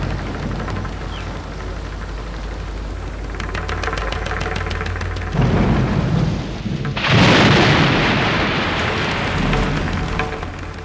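A steady rushing noise over a low rumble, with fine crackling about three to five seconds in and a louder surge of rushing noise from about seven seconds in.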